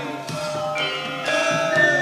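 Javanese gamelan music: struck bronze metallophones ring out new notes about twice a second, with a gliding melodic line sounding over them.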